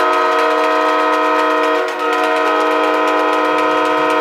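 Arena goal horn sounding one long, steady multi-tone blast with a slight dip about two seconds in, signalling a goal just scored.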